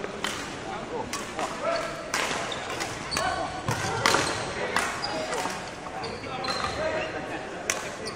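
Sharp footfalls and short squeaks of shoes on a wooden sports-hall court as a badminton player moves and jumps about, with repeated knocks.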